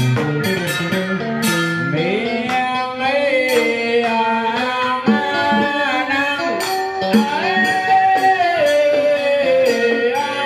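Southern Vietnamese ritual music (nhạc lễ): a two-string đàn cò fiddle plays a sliding, bending melody, with a plucked electric guitar and a few sharp drum strokes near the start.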